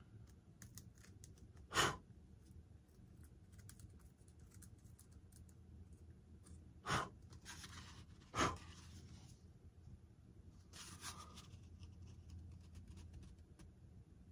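Faint scratching of a hobby knife blade picking at the foam of a model airplane's tail fin, with a few sharp ticks as the knife and foam part are handled.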